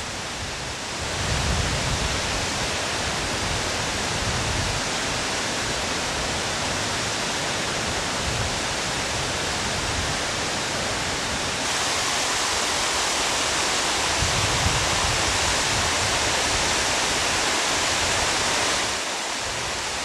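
Alpine waterfall falling in long plumes onto rock: a steady, even noise of water. It grows louder and brighter about twelve seconds in and drops back a little a second before the end.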